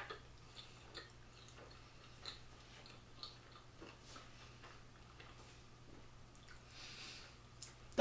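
Faint, scattered mouth clicks of a person chewing a chocolate-dipped marshmallow, over a steady low hum.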